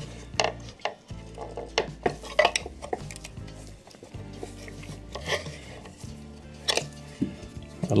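Irregular small clicks and scrapes of a metal screwdriver blade against the wooden pipe and case of a cuckoo clock as the low-note pipe is being prised off, over faint background music.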